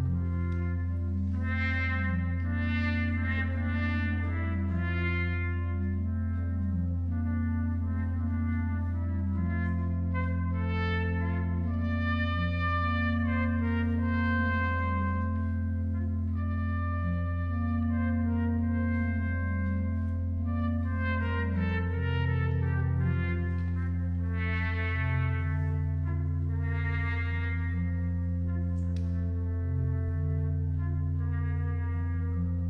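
Getzen F-cornet, muted and blown with a French horn mouthpiece, playing a soft, mellow pastorale melody. It is accompanied by a Vermeulen pipe organ holding a steady low bass note under a moving inner line.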